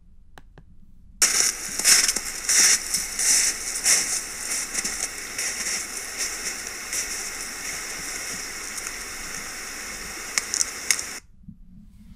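Trail-camera audio played back through computer speakers: loud crunching as a heavy animal moves through snow, thick with crackles for the first few seconds, then settling into a steady hiss. Near the end come a few sharp cracks, which are taken for a tree branch breaking or creaking, before the sound cuts off suddenly.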